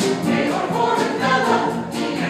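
A mixed choir of women and men singing together in harmony.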